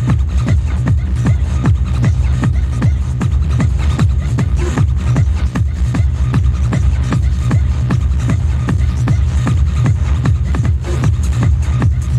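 Fast, hard electronic dance music from a 1990s UK hardcore techno DJ set, with a steady pounding kick-drum beat over heavy bass.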